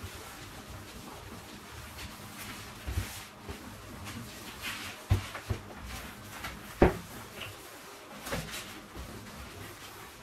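A cloth polishing kitchen cabinet doors dry, giving faint rubbing with a few light knocks as the doors bump in their frames under the pressing hand. The loudest knock comes about two thirds of the way in.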